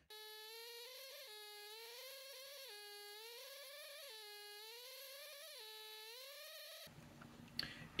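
ZOIC PalaeoTech Trilobite pneumatic air scribe running, with its stylus chipping at rock matrix. The faint buzz sags in pitch and recovers about every one and a half seconds as the pen is pressed to the stone and eased off. It cuts off suddenly near the end.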